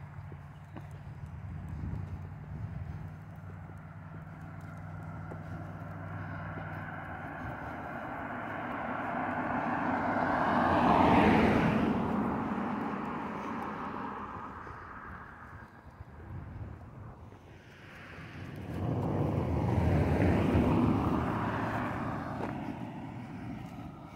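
Two cars passing on a two-lane road, each one's tyre and engine noise rising to a peak and fading away, the first about halfway through and the second a few seconds before the end. A low steady hum runs through the first few seconds.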